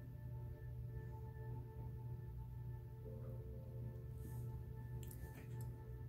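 A faint steady hum with several steady higher tones held above it, and a few soft clicks a little past the middle.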